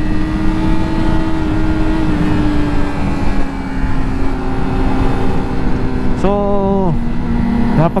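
Yamaha R6 inline-four engine running at a steady cruise, its pitch sinking slowly, under heavy wind rush on the helmet-mounted action camera. A short burst of voice comes about six seconds in.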